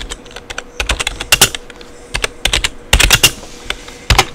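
Typing on a computer keyboard: irregular runs of sharp key clicks.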